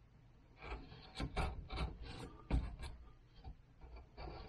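A hand carving tool cutting into cottonwood bark in a quick run of short, irregular scraping strokes, the sharpest one about two and a half seconds in.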